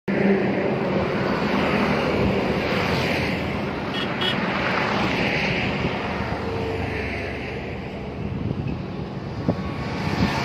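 Steady roadside highway traffic, with trucks and motorbikes passing and swelling and easing as they go by, and wind on the microphone. Two short high beeps sound about four seconds in.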